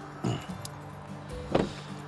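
A car door shut on an electric car at a charging stall, the loudest sound coming about one and a half seconds in, with a smaller sound just before it. Background music with steady tones plays underneath.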